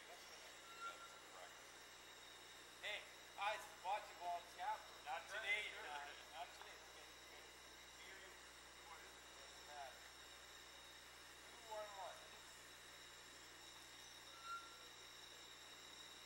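Faint voices of people talking in short snatches, mostly a few seconds in and again briefly past the middle, too low to make out words. A steady faint high whine and hiss of the recording runs underneath.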